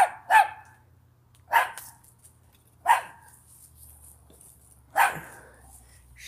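A dog barking: five short single barks spaced a second or two apart, a pair close together at the start.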